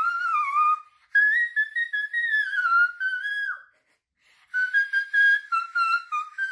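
A woman singing a melody in the whistle register, a very high, whistle-like voice. It comes in three phrases, with short breaks about a second in and near four seconds in.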